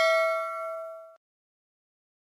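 Bell 'ding' sound effect of a subscribe-and-bell animation: a bright chime of several steady tones ringing and fading, cut off abruptly a little over a second in.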